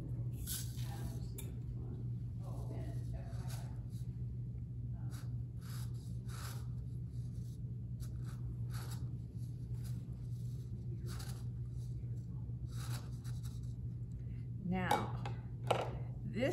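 Crushed walnut shells pouring and rustling through a plastic funnel into a small fabric pincushion, in short scattered bursts, with scraping as the funnel tip pushes the filling into the corners. A steady low hum runs underneath.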